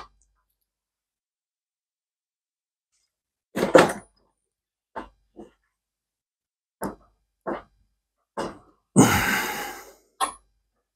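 Metal clunks and knocks from a breaker bar working the screw of a homemade screw-type rivet press, six short ones spaced over several seconds with the loudest about three and a half seconds in. A longer rushing sound near the end fades away.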